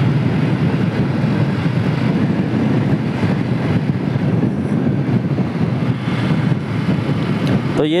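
Hero Splendor single-cylinder motorcycle under way at steady speed: engine, tyre and wind rush blending into one steady noise on the bike-mounted microphone.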